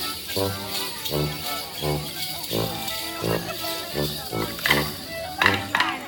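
A Morris dance tune played by a small band, with a sousaphone-style brass bass marking notes about twice a second under the melody. Near the end come a few sharp clacks of dance sticks struck together.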